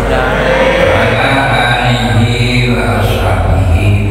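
An elderly man's voice reciting in a drawn-out, chant-like way, amplified through a handheld microphone and loudspeakers.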